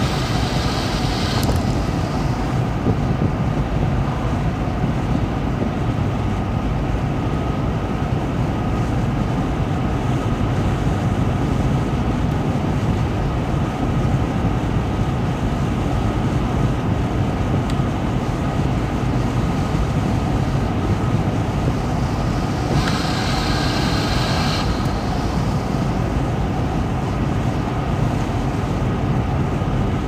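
Steady road noise inside a car's cabin cruising at highway speed, about 60 mph: a continuous low rumble of tyres and engine with a wash of wind. Twice, briefly, a higher hiss rises over it, once near the start and again about two-thirds of the way through.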